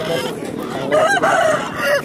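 Rooster crowing: one long crow starting about a second in, the loudest sound here.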